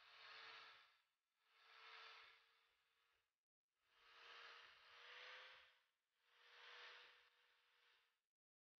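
Faint angle grinder with a flap disc grinding rust and paint off a small steel plate, the sound swelling and fading with each pass over the metal, over a steady faint tone. It cuts out abruptly for a moment about three and a half seconds in.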